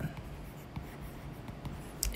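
Faint tapping and scratching of a stylus writing a word on a tablet's glass screen.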